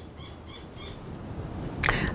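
A small bird chirping: a quick run of about four short, high calls in the first second, over a faint low rumble.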